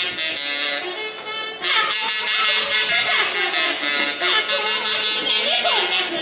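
Live huaylarsh band music, with saxophones playing a dance tune and voices calling out over it.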